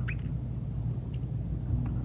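Steady low background hum, with a few faint, brief high squeaks: near the start, about a second in and near the end.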